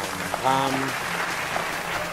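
Applause, an edited-in sound effect: a dense, even clatter of clapping that starts abruptly and runs under a single spoken word.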